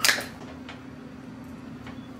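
A single sharp hit that dies away within a fraction of a second, followed by a faint steady hum with a couple of soft ticks.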